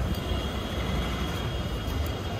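Steady low rumble of street background noise, with a faint high whine running through it.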